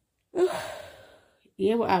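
A woman's loud, breathy sigh that starts suddenly with a short voiced note and trails off over about a second. Her speech follows near the end.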